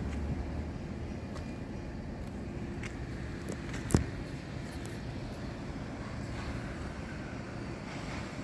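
Steady low outdoor background rumble with a faint hum, and one sharp knock about four seconds in as the handheld phone swings along the metal gate bars.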